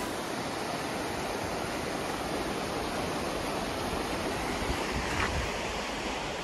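Steady rushing outdoor noise with no distinct events, the kind wind or running water makes on a phone microphone while walking outside.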